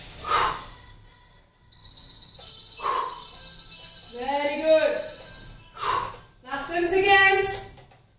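A steady high-pitched electronic beep held for about four seconds, starting abruptly about two seconds in and cutting off shortly before six seconds.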